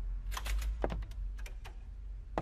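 A quick irregular series of light clicks and taps, about eight in two seconds, over a steady low hum.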